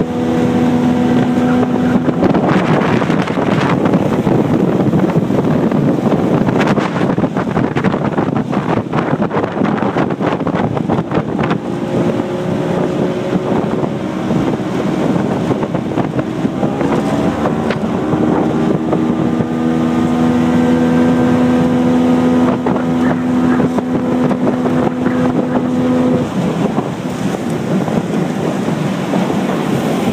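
70 hp outboard motor driving a jon boat at speed, running strongly. Its pitch rises and falls in the middle and holds steady for several seconds later on, under a constant rush of water and wind on the microphone.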